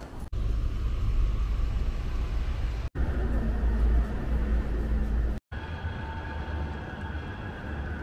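Outdoor city-centre street noise with a low traffic rumble, broken by three abrupt dropouts at edits. A faint steady tone joins it in the second half.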